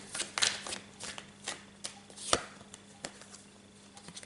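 A deck of tarot cards shuffled by hand: a string of short, irregular card snaps and slaps, with one louder slap a little past the middle.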